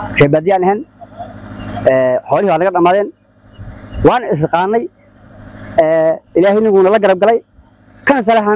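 A man's voice reciting a prayer in a melodic chant, in drawn-out phrases with short pauses between them.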